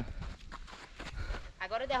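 Quiet outdoor background with a few faint short clicks, then a voice calling out near the end.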